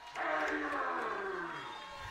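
A tiger's roar, most likely a recorded sound effect played for the home Tigers: one long roar that comes in suddenly and falls steadily in pitch, fading over nearly two seconds.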